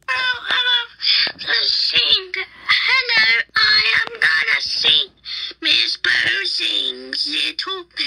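Very high-pitched cartoon baby voices babbling and giggling in quick, short phrases with swooping pitch and no clear words; a somewhat lower voice takes over in the last few seconds.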